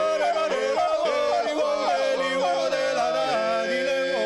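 Male a cappella ensemble singing a Georgian polyphonic folk song: one voice holds a steady drone while the top voice leaps up and down in quick yodel-like breaks, the other voices moving around it.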